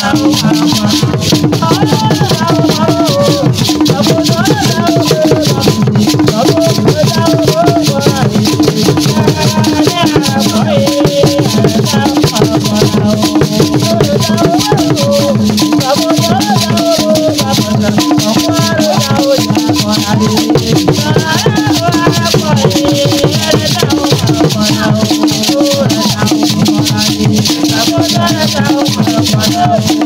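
Live traditional Ewe ritual music: shaken rattles keep up a dense, fast rhythm under a group of voices singing, with steady low tones beneath, all continuous and loud.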